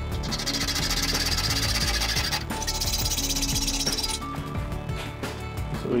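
Background music over a hacksaw cutting notches into an aluminium C-channel: a rasping hiss of sawing for about four seconds, broken briefly near the middle.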